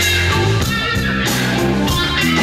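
Live rock band playing an instrumental passage: electric guitar and bass guitar over a drum kit, with no vocals.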